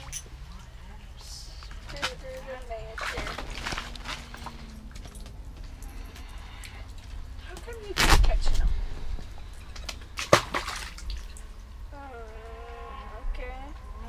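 Golden retriever scrambling in wet slush and on the shelter floor beside an ice-fishing hole: a loud thump and slosh about eight seconds in, then a sharp knock a couple of seconds later, over a steady low rumble.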